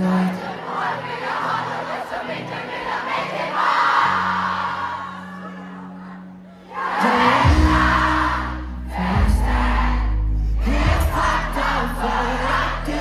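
Concert crowd screaming and singing over held low chords from the band; about seven seconds in, a heavy deep bass comes in and the music gets louder.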